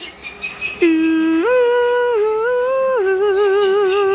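A voice humming a slow, eerie tune of a few long held notes that step up and down, the last one wavering.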